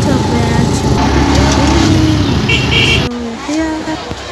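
Loud road noise from a moving motorcycle: low engine rumble and wind buffeting, with people's voices along the street. About two and a half seconds in there is a short pair of high beeps. The noise cuts off abruptly just after three seconds, leaving quieter voices.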